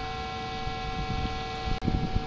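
A steady electronic hum made of several fixed pitches, over a low rumble, with a sharp click near the end.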